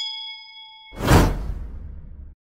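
Subscribe-button animation sound effect: a bright bell ding as the notification bell is clicked, ringing for about a second, then a whoosh about a second in that fades away.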